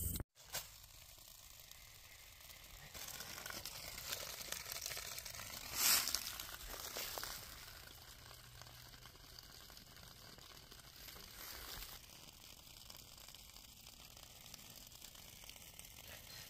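Faint crackling rustle that swells a little a few seconds in, with one brief louder rustle about six seconds in.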